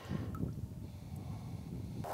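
Faint low rumble of wind on the microphone, with no distinct events.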